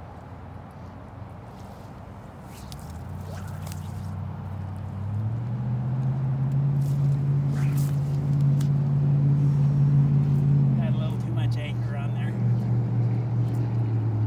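A motor engine's low, steady hum that grows louder over the first few seconds. Its pitch steps up about five seconds in and drops back near the end.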